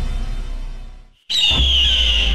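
Dark film score music fading out to a moment of silence; just past the middle a low drone and a high, slowly falling bird-of-prey scream cut in together.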